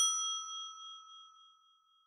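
A bell-like notification chime sound effect, the ding played when the bell icon of a subscribe animation is clicked. It rings with several clear tones and fades away over about a second and a half.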